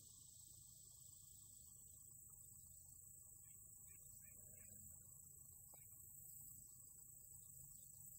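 Near silence, with a faint, steady, high-pitched drone of insects such as crickets over a low background rumble.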